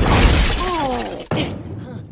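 Animated-film crash effect: debris blasting through a wooden wall with a loud crash of breaking material, a falling cry over it, then a sharp smash about a second and a quarter in.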